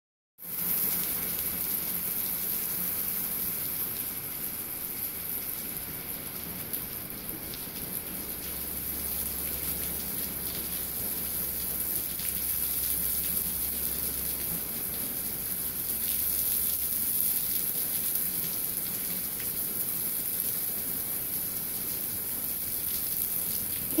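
Steady rain falling outside, heard through an open doorway as an even, constant hiss.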